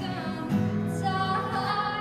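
A young woman singing while strumming an acoustic guitar; a fresh strum comes about half a second in, then her voice carries a sung line over the ringing chord.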